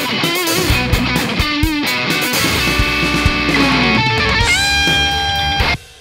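A recorded electric guitar solo playing back over a drum backing track: quick lead lines with string bends and vibrato, ending on a long held note from about four and a half seconds in that stops abruptly just before the end.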